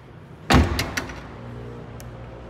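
The Scion tC's rear hatch is slammed shut about half a second in: one heavy thud followed by two quick latch clicks.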